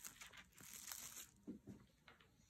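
Faint crinkling of plastic cling wrap as it is draped over braided challah dough, with two brief soft handling sounds past the middle.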